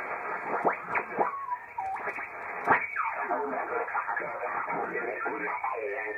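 Collins R390A receiver's audio being tuned across the 14 Mc (20-metre) band in SSB through a Sherwood SE-3 synchronous detector: band-limited static with whistles and garbled voices sliding in pitch as the dial sweeps past stations. In the second half a single-sideband voice comes through more steadily.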